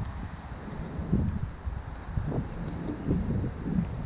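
Wind buffeting the camera microphone: an uneven low rumble that swells and dips.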